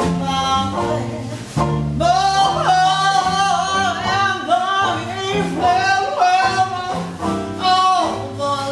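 A woman singing a slow jazz ballad with wide vibrato, backed by a Dixieland jazz band with upright bass. The band plays alone for about two seconds before her voice comes in and carries the rest.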